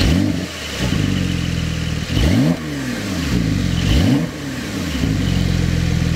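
An engine revving in three blips, its pitch rising and falling with each, then holding a steady speed for the last second or so.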